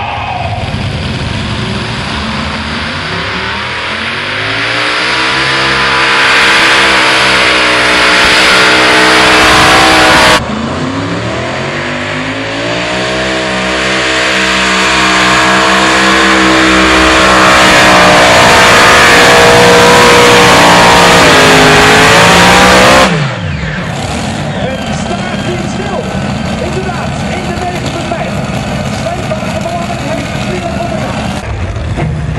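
Multi-engine modified pulling tractors at full throttle pulling the sled. The engines rev up with a rising note and hold high. The sound cuts off suddenly about ten seconds in, then a second run rises and holds until it breaks off abruptly near 23 seconds. After that the engine noise is quieter, mixed with voices.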